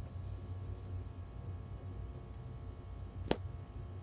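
Low steady hum inside a parked truck cab with the engine shut off, with one sharp click a little over three seconds in.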